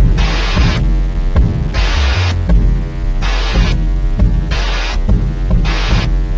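Instrumental stretch of a dancehall track: deep bass throughout, with short blocks of hiss coming back about every second and a half.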